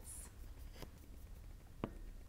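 Quiet room tone with a few small sharp clicks. The loudest comes near the end.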